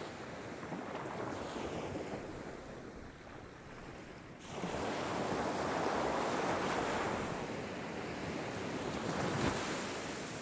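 Ocean surf: a steady rush of waves washing on a shore, which jumps louder suddenly about four and a half seconds in and swells again near the end.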